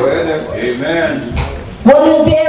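A woman's voice preaching into a handheld microphone, an impassioned sing-song delivery that the words can't be made out from, growing louder just before the end.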